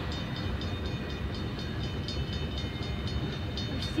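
A freight train of tank cars rolling past with a steady rumble. Over it a railroad crossing bell rings quickly, about five strikes a second.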